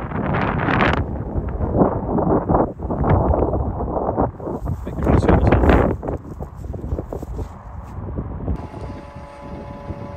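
Wind gusting on the phone's microphone, a loud rumbling buffet that rises and falls. Near the end it gives way to a steady hum with several even tones from inside the vehicle.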